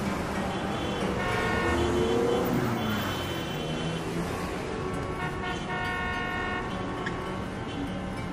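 Car horns sounding in long steady blasts over street traffic noise, one starting about a second in and another around five seconds in.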